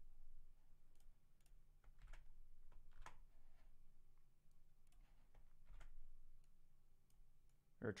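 Faint, scattered clicks of a computer mouse and keyboard, irregularly spaced, over a low electrical hum; near silence otherwise.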